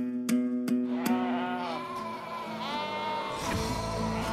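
Background music with steadily plucked strings, joined about a second in by a flock of sheep bleating over it. A low rumble comes in near the end.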